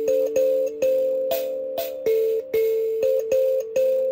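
Mbira dzavadzimu plucked with the thumbs in a repeating uneven rhythm, about two to three notes a second: each metal key struck sharply and left ringing, with the buzz of the rattles on its soundboard over the tone. The notes are the roots of three successive chords (last, first and second) of the song cycle, played in a twelve-beat pattern of seven strokes.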